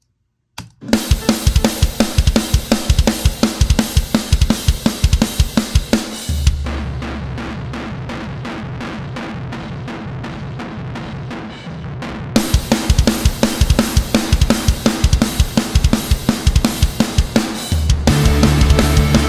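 Recorded drum kit heard through a single mono room mic, run through an Electro-Harmonix Big Muff fuzz for heavy distortion. Fast, dense kick and cymbal hits start about a second in. In the middle stretch of about six seconds a sustained low drone takes over, the cymbals drop away and the hits sound weaker; the dense kit pattern then returns.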